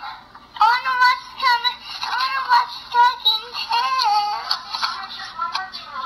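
A toddler's high voice in a string of short, sing-song phrases without clear words, rising and falling in pitch, played back through the small speaker of a recordable storybook.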